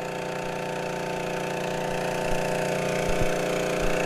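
A motor running steadily with an even hum, growing slightly louder.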